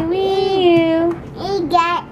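A young child's voice imitating a police siren: a long steady 'wee' that steps between two close pitches, breaking off about a second in, then a shorter rising-and-falling call near the end.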